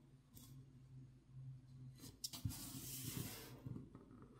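Plastic pry pick working along the seam of a phone's glass back plate, cutting through heat-softened adhesive: a faint scraping crackle with a few sharp clicks starting about halfway through, fading out just before the end.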